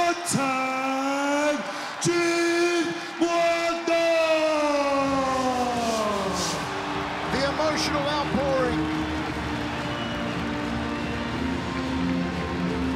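Ring announcer's long, drawn-out shout over the arena PA, each note held for a second or more and dropping in pitch at its end, as the new world champion is named. About six seconds in it gives way to background music.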